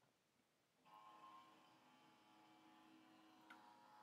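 Near silence, with a very faint steady hum of several tones starting about a second in: the flatbed scanner of an HP Photosmart all-in-one running its scan pass.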